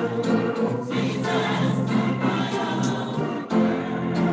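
A choir singing gospel music.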